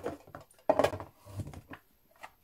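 Handling sounds as plastic-sleeved photocards are set into a small cardboard box and the box lid is handled: soft rustles and a couple of knocks, the loudest a little under a second in.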